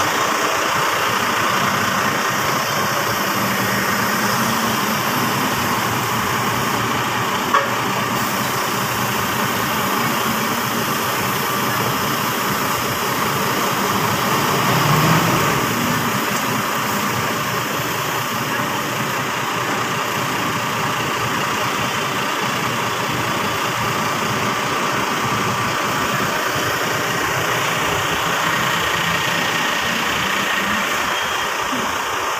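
Large diesel buses idling nearby, a steady engine rumble with no break. There is a single sharp click about seven and a half seconds in and a brief swell in loudness around fifteen seconds.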